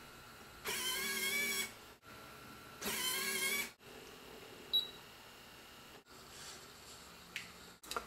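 Electric gear motors in the Trackbot's arm joints whining in two bursts of about a second each as the arm is driven from the transmitter knobs, followed by a sharp click and a fainter click later.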